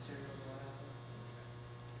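Low, steady electrical hum of a tensile testing machine running as it slowly pulls a carabiner under rising load.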